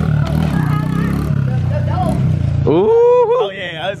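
Small kids' dirt bike engine running steadily at low revs, with people talking around it. About two and a half seconds in it gives way to a person's loud, drawn-out rising call.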